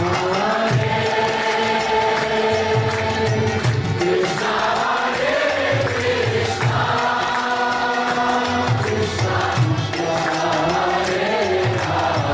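Kirtan: a man leading a devotional mantra chant with held, gliding notes, with a group singing along, over a steady drum beat.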